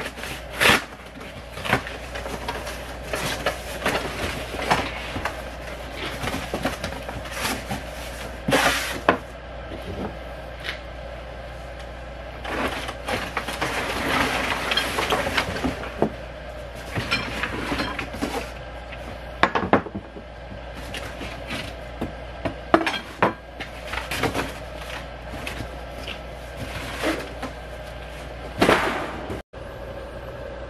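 A cardboard box being opened and unpacked: cardboard rustling and scraping, with many irregular clinks and knocks as aluminium and plastic seeder parts are lifted out and set on a wooden bench.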